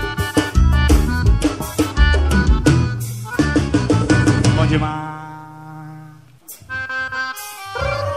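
Live forró band music: accordion over a driving drum beat. About five seconds in the drums drop out, leaving held accordion notes that fade almost away before a short run of notes leads back into the beat.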